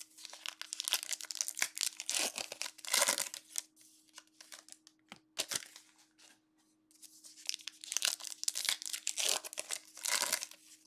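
Foil trading-card pack wrapper being torn open and crinkled by hand, in two spells of crackling with a quieter pause in the middle.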